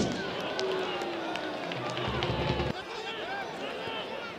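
A single sharp thump of the football being struck at the start, followed by men shouting and cheering from the players and a small stadium crowd, loudest in the first three seconds.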